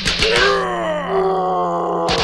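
A cartoon larva character's voice: quick sharp hits at the start, then one long groan that falls in pitch.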